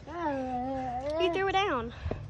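A child's voice drawing out one long, animal-like call in play as a llama, held steady at first, then wavering higher and falling away near the end.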